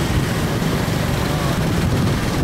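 Steady rumble of vehicle engines and road noise heard from a vehicle moving through dense city traffic.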